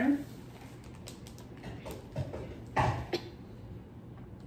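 Plastic zip-top bag rustling and crinkling as it is held open and oil is poured in, with a few brief crackles and light knocks, the loudest about three seconds in.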